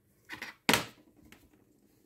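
Handling noise on a workbench: a soft knock, then a sharp click just under a second in, and a fainter click after it.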